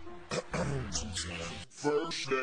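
A person's voice making a short, fairly quiet vocal sound lasting about a second. Music starts again near the end.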